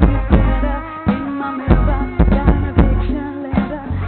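Live band music: a vocalist singing into a microphone over a drum kit with heavy bass and other backing instruments.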